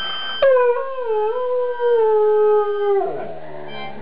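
Afghan hound howling: one long howl begins about half a second in and slides slowly down in pitch, then drops lower and trails off near the end.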